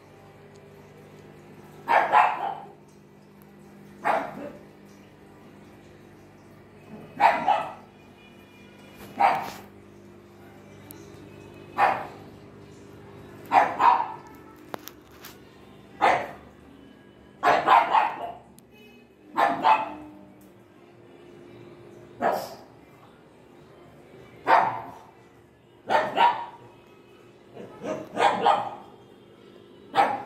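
A dog barking repeatedly, one bark roughly every two seconds and sometimes two in quick succession, over a steady low hum.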